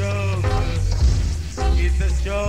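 Live reggae band playing with a heavy, steady bass line, and a pitched lead line that sounds at the start and comes back near the end.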